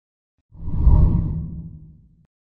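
Whoosh sound effect of an animated logo intro, deep and bass-heavy. It swells in about half a second in, peaks quickly and fades away over the next second.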